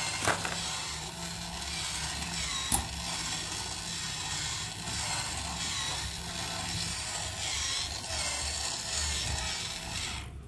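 Small electric motor and plastic gears of a coin-eating face bank toy running on 5 V, working its mouth in a repeating chewing cycle about once a second. A sharp snap comes a little before three seconds in.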